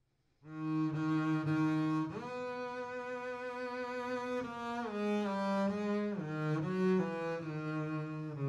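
Slow melody played on a bowed string instrument, starting about half a second in. It is a line of long sustained notes that step to a new pitch every second or two.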